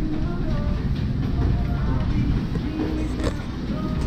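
Supermarket ambience: a steady low rumble with faint voices of other shoppers in the background.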